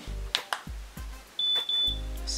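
A few small plastic clicks from handling the Kodak Mini Shot instant camera and pressing its buttons, then a high electronic beep from the camera about one and a half seconds in, broken once partway through, as a shot is taken.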